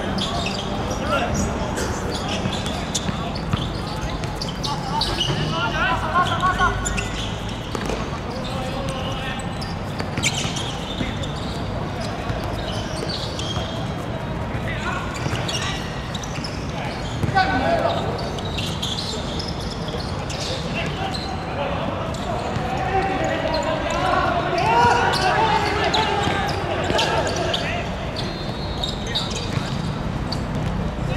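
Football players' shouts and calls on an outdoor hard-court pitch, with scattered thuds of the ball being kicked and bouncing on the hard surface.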